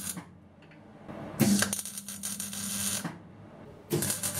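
MIG welder arc crackling and sizzling in short bursts over a steady hum: one burst dies away just after the start, a second runs for about a second and a half in the middle, and a third starts right at the end.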